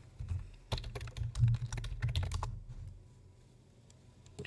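Computer keyboard typing: a quick run of keystrokes that stops about two and a half seconds in.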